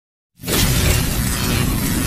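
Channel-logo intro sound effect: after a brief silence, a sudden loud burst of dense, crashing noise with a heavy low rumble starts about a third of a second in and keeps going.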